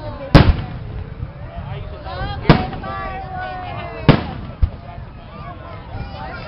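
Aerial firework shells bursting overhead: three sharp booms about two seconds apart, the first the loudest, with a lighter pop just after the third.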